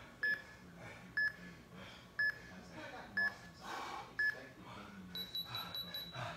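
Interval timer app sounding a countdown: five short beeps a second apart, then a higher tone pulsing rapidly for about a second, marking the end of one work interval and the start of the next.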